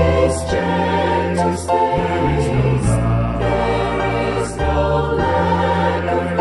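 A choir singing a four-part hymn over sustained low accompaniment notes.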